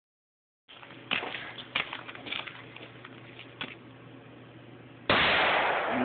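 A loud blast goes off suddenly about five seconds in, after a few faint clicks. It leaves smoke hanging in the woods, and it is really loud.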